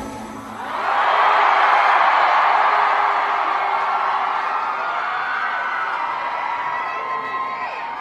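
Concert audience cheering and screaming at the end of a song. It swells about a second in and slowly fades away.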